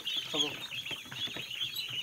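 A dense chorus of Khaki Campbell ducklings peeping, many short high calls overlapping without a break.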